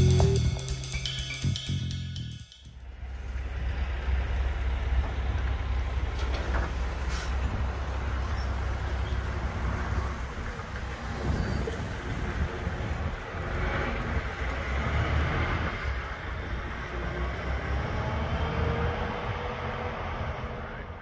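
Music with drums for the first couple of seconds, then the steady low rumble of a diesel semi-truck running as it hauls a freight trailer away down the street.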